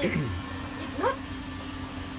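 Travel trailer's slide-out electric motor running with a steady hum while its switch is held, moving the slide-out room outward.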